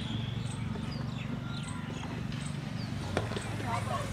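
Cricket bat striking the ball: a single sharp crack about three seconds in, over a steady low hum and faint short high chirps.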